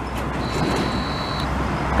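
Steady road traffic from a busy toll road, vehicles passing in a continuous rumble and hiss. A thin high steady whine sounds for about a second, starting about half a second in.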